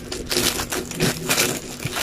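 Clear plastic bag crinkling in irregular crackly bursts as it is handled.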